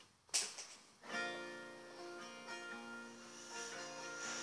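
Acoustic guitar beginning a song's intro about a second in, played quietly as picked single notes that ring on over one another. A brief knock comes just before the first note.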